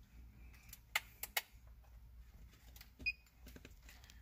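Faint clicks and handling noise from a plastic OBD2 scan tool and its cable connector being fitted into a car's diagnostic port, with three sharper clicks about a second in. A brief faint beep sounds near the end.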